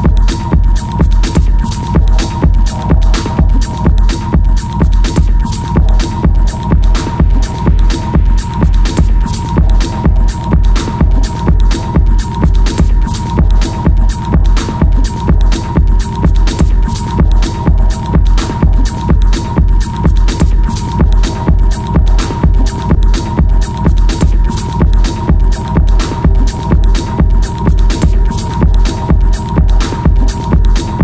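Hard minimal techno: a pounding four-on-the-floor kick drum a little over two beats a second, with hi-hat ticks on top and a held high synth tone.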